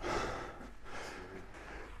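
A man's quiet breath out near a clip-on microphone, a soft puff at the start and a fainter one about a second in, over low workshop hall noise.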